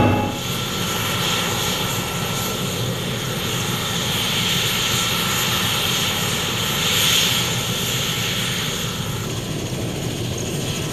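Mi-24 Hind helicopter running on the ground with its twin turboshaft engines and five-blade main rotor turning: a steady rushing turbine-and-rotor noise with a high hiss that swells in the middle and again about seven seconds in.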